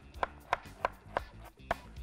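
A kitchen knife chopping carrots on a wooden cutting board: five sharp knocks of the blade through the carrot onto the board, about three a second.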